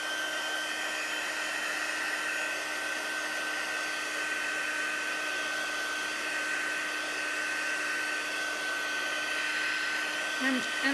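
Handheld craft heat tool (embossing heat gun) running steadily: a rush of hot air with a constant high-pitched fan whine, drying wet watercolor paper.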